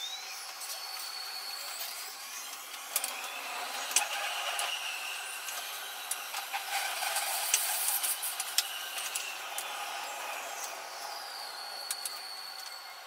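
Oslo T-bane metro train running through a tunnel: the electric traction motors whine, rising at the start and falling near the end as the train brakes into a station, with many sharp clicks from the wheels and track.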